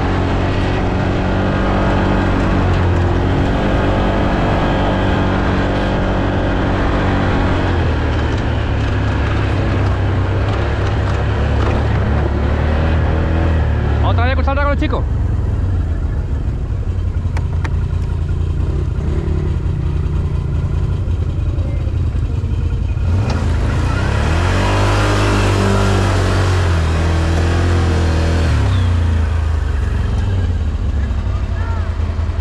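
ATV engine running while under way on a rough trail, its pitch rising and falling with the throttle. A brief whistling glide comes about halfway through, and a loud hiss rises over the engine for several seconds near the end.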